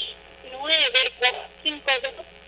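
Speech only: a woman's voice coming in over a telephone line, sounding thin and narrow.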